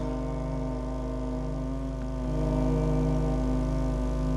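A steady, sustained musical drone with many stacked overtones over a deep low hum, swelling slightly about two seconds in.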